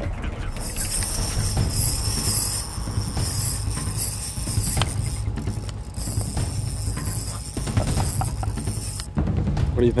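Fishing reel winding in a hooked bream: a steady high mechanical whirr in two long stretches, with a short break about halfway through and another near the end.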